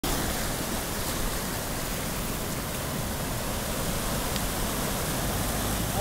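Steady rush of seawater washing in and out among shoreline rocks.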